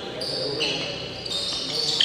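Badminton players' shoes squeaking on the court floor during a doubles rally: several short, high squeals one after another.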